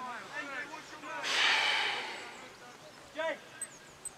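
A loud breathy exhale close to the microphone, about a second in, rising quickly and fading over about a second and a half, with distant players' shouts around it.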